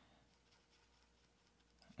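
Near silence, with a few faint light ticks of a pencil point marking paper.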